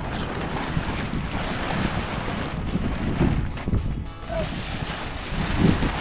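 Wind buffeting the microphone outdoors: a steady rushing noise with gusty low rumble.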